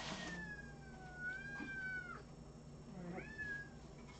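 Cat meowing, crying: one long drawn-out meow that slides down in pitch, then a shorter rising-and-falling meow about three seconds in.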